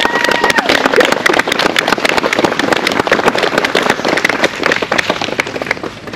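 Guests clapping and cheering, with a long whoop in the first half-second over steady applause that thins out near the end.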